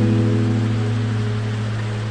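Slow instrumental meditation music: a single acoustic guitar chord left ringing and slowly fading, over a steady hiss of flowing water.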